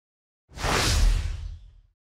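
Whoosh sound effect for an animated logo transition, with a deep low rumble underneath. It starts suddenly about half a second in and fades away over about a second and a half.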